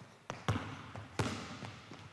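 Basketballs bouncing on a hardwood gym floor: a few dribbles, two louder bounces under a second apart, each echoing briefly in the gym.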